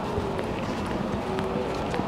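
Town street ambience: a steady background noise of a busy street with faint voices of passers-by.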